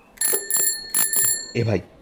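Bicycle bell rung four times in quick succession, in two close pairs. Its metallic ring lingers briefly after the last strike.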